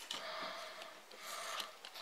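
Faint rustling and a few light clicks as a homemade mole trap is handled and reset by hand.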